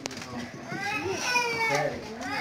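A young child's high-pitched voice, one drawn-out call of about a second that rises and falls, over background chatter, after a short sharp click at the start.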